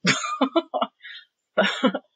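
A woman laughing briefly in a few short breathy bursts, then saying "so".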